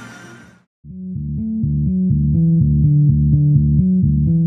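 A fuller piece of music fades out in the first half-second. After a brief gap, a plucked bass-guitar line starts about a second in and plays a quick run of low notes, several a second, as a jingle between segments.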